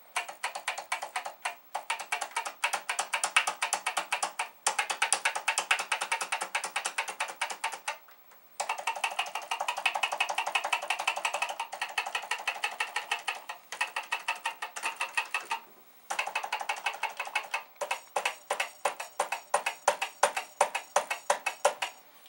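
Commodore VIC-20 keyboard keys being hammered rapidly and repeatedly, a fast clattering run of plastic key clicks with short pauses about 8 and 16 seconds in. The keys are being struck over and over because, after cleaning, many of them register only intermittently.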